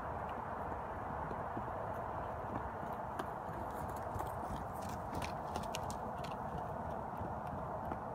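A horse's hoofbeats: a quick, irregular run of clicks in the middle, over a steady hiss.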